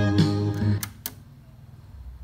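Vietnamese song with guitar playing back from a cassette on a Pioneer tape deck. It cuts off under a second in as the deck's Pause key is pressed, with two sharp mechanical clicks, leaving only faint hiss.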